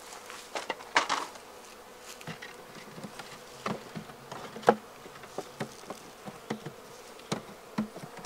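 Honeybees buzzing around an open hive, with repeated short wooden knocks and clacks as frames are lifted and set into the wooden hive box.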